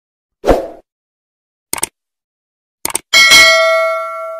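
Subscribe-button animation sound effects: a soft pop about half a second in, two quick double mouse-clicks a little over a second apart, then a bright notification-bell ding that rings on and fades away.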